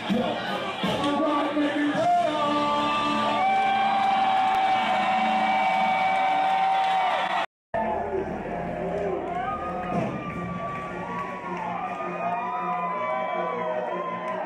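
Live hip-hop concert music through a venue sound system, heard from within the crowd, with crowd noise and cheers, and a long held note in the music for several seconds. About halfway through, the sound drops out for a moment where the recording cuts to another clip.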